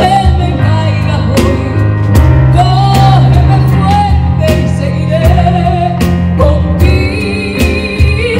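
Live performance of a ballad: a woman sings drawn-out, wavering notes into a microphone over grand piano chords and a drum kit with cymbal strikes.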